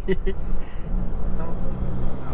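Car engine and road noise heard inside the cabin while driving: a steady low hum and rumble.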